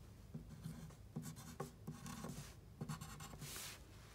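Tombow MONO HB graphite pencil writing a short word on a paper worksheet: a faint run of short scratching strokes.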